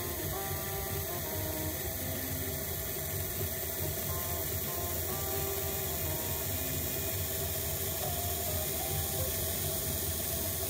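Vintage 00-gauge model locomotive chassis running on a rolling road, its electric motor and gears whirring steadily with the armature bearings and drive gear freshly lubricated. Soft background music plays along with it.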